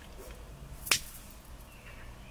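A single sharp click about a second in, over a quiet steady background hiss.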